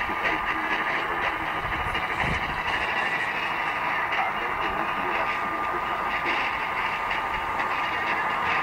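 A mediumwave radio receiver tuned to All India Radio on 1566 kHz over a very long distance: dense static noise with the weak broadcast signal buried in it, muffled and cut off above the voice range, and a steady whistle tone from an interfering carrier.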